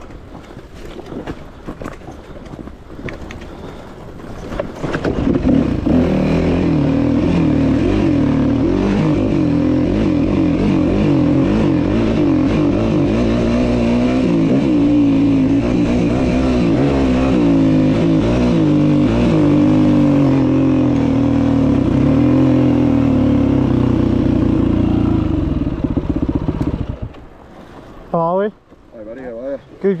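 Yamaha WR250F four-stroke single-cylinder dirt bike engine being ridden: quieter for the first few seconds, then loud from about five seconds in, its revs rising and falling through the gears, until it drops back near the end.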